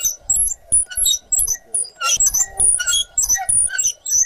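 Hand-turned corn mill being worked to grind corn, giving repeated scraping strokes a few times a second with short, high squeaks.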